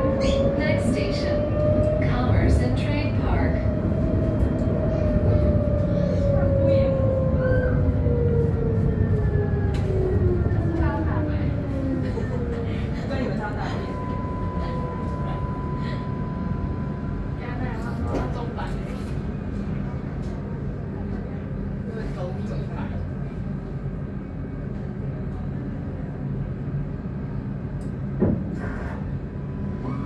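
Light-rail tram heard from inside the car: a steady low rumble with a motor whine that rises a little, then falls in pitch and fades as the tram slows to a stop. Then a steady beep for about three seconds and a few scattered clicks, one sharp tick near the end.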